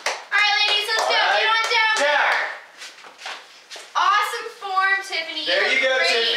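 Young women's high-pitched voices calling out without clear words, in two loud spells, mixed with a run of sharp hand claps.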